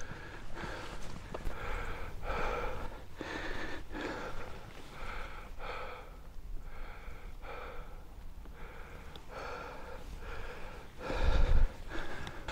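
A man breathing hard and rhythmically through the mouth, a breath roughly every half second, out of breath from walking up a steep slope. A loud low rumble on the microphone near the end.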